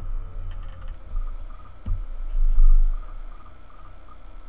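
An Amiga 500 with its hard drive controller being switched off by hand. A low rumble and knocks run under a faint steady whine, with a thump and a sharp click just before two seconds in.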